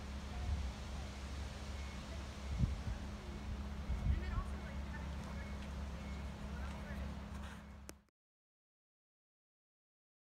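A steady low hum with a few soft low thumps and faint background sounds, cutting off abruptly about eight seconds in.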